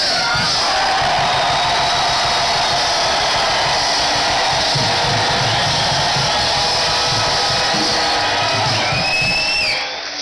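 A large congregation shouting and cheering together in a big hall, a loud, steady wall of voices that holds for the whole stretch, with a high cry rising above it near the end.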